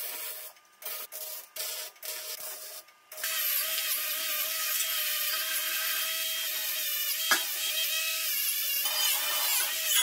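Electric welding crackling in short bursts with gaps for about three seconds. Then a small cordless grinder starts and runs steadily against the steel frame tubing, grinding down the welds, with one sharp click partway through.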